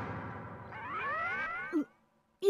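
A cartoon sound effect: a pitched tone with several overtones gliding steadily upward for about a second, ending in a short low blip just before the sound cuts off.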